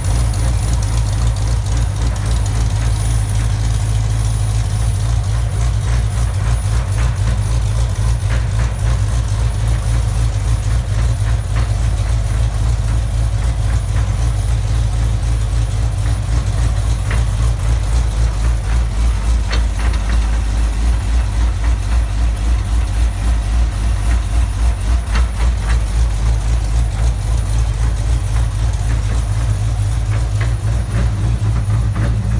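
GM LSA supercharged 6.2-litre V8 running at a steady idle, with a rhythmic low pulse that grows stronger in the second half.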